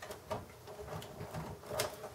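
Light rustling and small plastic clicks of a computer power supply's wire bundle and connector being handled and lined up with the motherboard socket, with a sharper click near the end.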